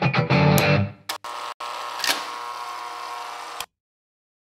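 Electric guitar music: a quick run of picked notes, then a held chord ringing on at a lower level that cuts off suddenly near the end.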